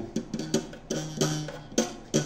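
Banjo strings strummed in a quick run of short strokes, about half a dozen in two seconds. The player attributes a vibration in the sound to the overlong tailpiece touching the banjo.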